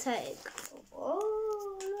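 A brief murmur, then a long drawn-out vocal call that rises slightly and is held at a steady pitch for about a second near the end.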